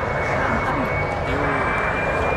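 Airplane flying low overhead: a steady rushing engine noise.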